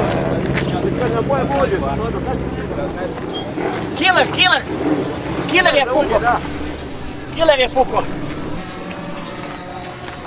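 A motorcycle engine running steadily, fading away over the first few seconds. Then people's voices call out in three short, loud bursts.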